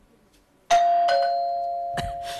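Doorbell ringing a two-note ding-dong, the second note lower, both notes dying away slowly. A short click comes near the end.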